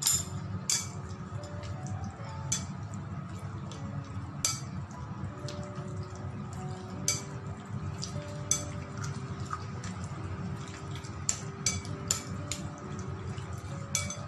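Chopsticks clinking and tapping irregularly against a ceramic bowl as marinated pork chops are stirred and mixed with their seasoning, with faint music underneath.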